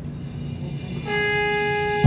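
Start of the backing track for the song: over a low hum, a single held note with a wind-instrument sound comes in about a second in.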